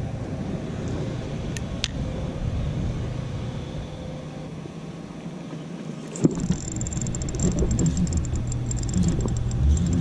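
Wind rumbling on a body-worn camera's microphone, with a sharp knock about six seconds in. After the knock a spinning reel is cranked, giving a thin high whir with fine rapid ticks.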